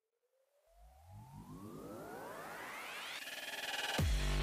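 Synthesized rising sweep, climbing steadily in pitch and growing louder, with a deep rumble underneath and a fast fluttering pulse near the end: an electronic riser building into the intro music.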